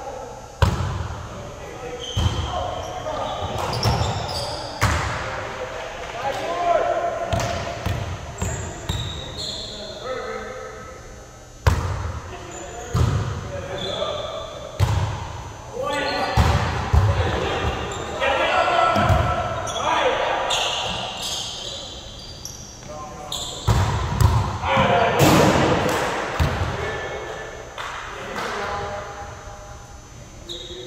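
Volleyball rally on a gym court: a string of sharp smacks of hands striking the ball and the ball hitting the hardwood floor, echoing around the hall, mixed with players' voices.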